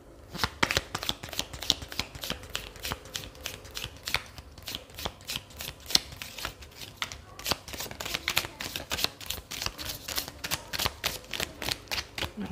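A deck of cards being shuffled by hand: a steady, irregular run of quick, crisp card clicks and slaps, a few each second.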